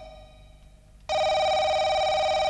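Electronic telephone ringer warbling: one ring starts about a second in and lasts about a second and a half. It comes just after the previous ring ended.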